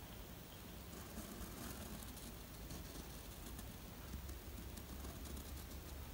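Faint scratching of a pen drawing curved strokes on paper, over a low steady hum.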